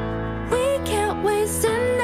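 Background music: a melody moving over sustained chords.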